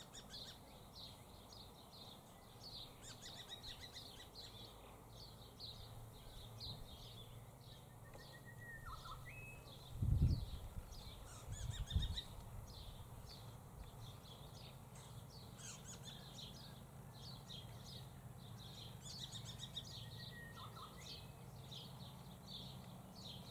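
Faint, continuous high chirping of small birds, with a few short whistled notes. Two dull low thumps come about ten and twelve seconds in.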